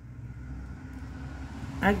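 Steady low background rumble, with a single spoken word starting near the end.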